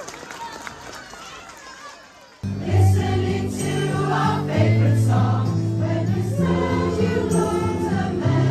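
Crowd murmur for the first couple of seconds. Then, abruptly, a choir starts singing a song over loud amplified accompaniment with sustained bass notes.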